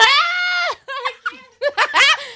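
A woman's high-pitched squeal held for about a second, then laughter in short breathy bursts.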